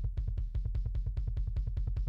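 Soloed sub-kick track of a metal kick drum playing a fast double-kick run: rapid, evenly spaced hits, mostly deep low end with little attack on top.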